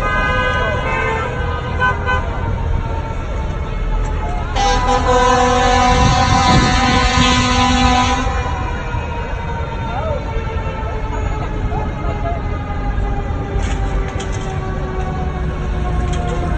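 Vehicle horns sounding in the street. A steady horn-like tone holds throughout, sinking slowly in pitch, and a louder long horn blast comes in about four and a half seconds in and lasts almost four seconds.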